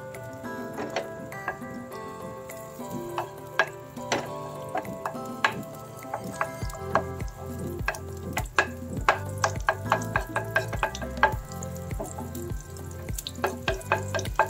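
Butter melting and sizzling in a frying pan while a wooden spoon stirs and taps against the pan, over background music whose steady beat comes in about halfway through.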